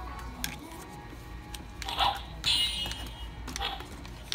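Wonder Woman toy sword's try-me sound chip playing a short, tinny electronic battle sound effect through its small speaker, about two and a half seconds in, amid the rustle of the plastic packaging being handled.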